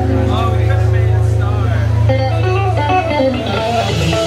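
Live electronic funk band music: a deep held synth bass under electric guitar lines, with a run of quick guitar notes coming in about halfway through.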